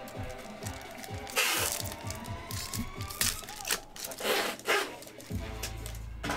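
Foil wrapper of a Pokémon booster pack being torn open and crinkled by hand, in several short rustling bursts, over background music that picks up a deep bass line near the end.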